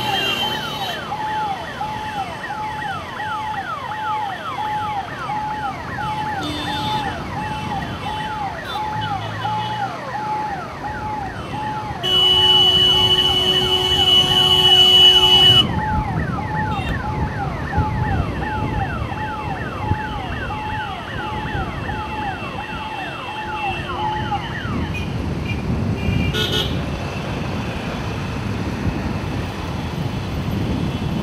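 Electronic vehicle siren sounding in a fast, evenly repeating wail, heard over road traffic. About twelve seconds in, a long horn blast of about three and a half seconds is the loudest sound. The siren stops a few seconds before the end, leaving traffic rumble and wind on the microphone.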